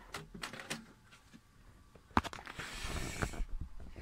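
Handling noise as the telescope equipment and camera are moved: a few light clicks and knocks, one sharper knock about two seconds in, followed by a brief rustle.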